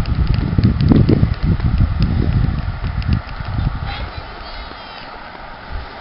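Wind buffeting the camera microphone: a heavy, irregular low rumble with light clicks that dies down after about three and a half seconds.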